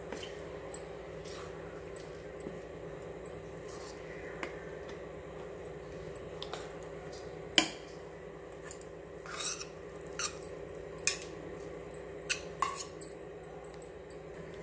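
Spoon stirring thick wheat-flour batter in a stainless steel bowl, with scattered clinks of the spoon against the bowl. The sharpest clink comes about seven and a half seconds in.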